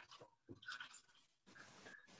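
Near silence: quiet room tone over a video-call connection, with a few faint, brief soft noises.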